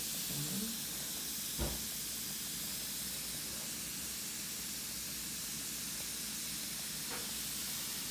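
An L.O.L. Surprise Pearl fizzing ball dissolving in a bowl of water, giving a steady fizzing hiss, with a single knock about one and a half seconds in.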